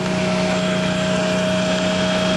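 Greyhound bus engine and road noise heard inside the passenger cabin: a steady drone with a constant low hum.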